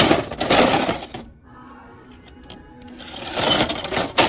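Old metal kitchen knives clattering and clinking against each other in a plastic tub as a hand rummages through and grabs a bundle of them. There are two spells of clatter, with a quieter lull in the middle.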